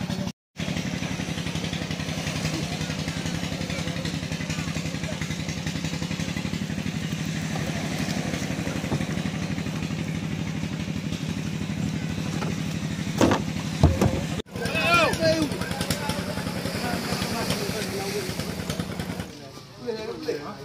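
A small engine running steadily with a low, even hum, with a short burst of voices about two-thirds of the way through.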